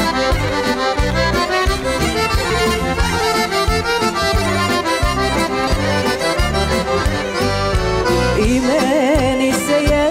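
Live folk band playing an accordion-led instrumental intro over a steady bass-and-drum beat. Near the end a woman's voice comes in, singing with a wide vibrato.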